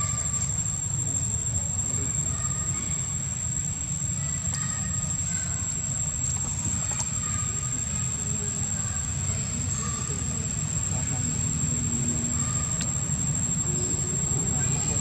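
Outdoor ambience: a steady low rumble with a continuous high-pitched insect drone above it, and faint brief sounds scattered through.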